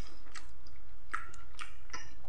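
A person chewing food with the mouth closed: a few soft, scattered mouth clicks and smacks.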